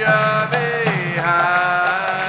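Devotional Sanskrit mantra chanting: a chanting voice holds long notes and glides between them, over a light, sharp, even beat about three times a second.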